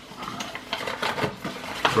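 Snack wrapper being handled and crinkled, a quick irregular run of small crackles and taps.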